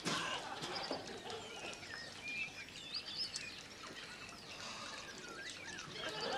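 Birds chirping and twittering in short, scattered calls over a faint outdoor hiss, with a soft knock right at the start.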